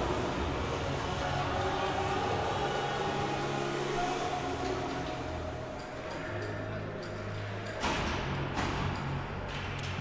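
Ice hockey arena ambience during a stoppage in play: a steady low hum, faint music and a murmur from the crowd, rising briefly about eight seconds in.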